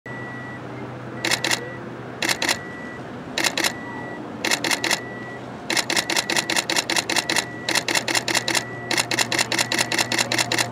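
Still-camera shutters firing in burst mode: short groups of two or three clicks about once a second, then from about halfway in, long rapid runs of about eight clicks a second.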